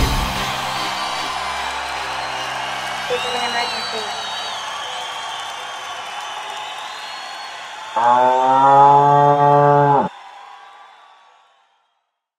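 A cow moo sound effect: one loud, low, drawn-out moo of about two seconds, coming about eight seconds in and cut off abruptly. Before it, the electronic dance music has just stopped and its tail slowly fades away.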